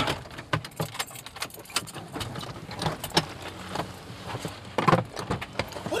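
Scattered small clicks and rattles from a stopped Toyota car, with a louder cluster of knocks near the end as its front doors are unlatched and swung open.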